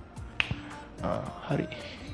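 A single sharp click about half a second in, over quiet background music. A man says a short word near the end.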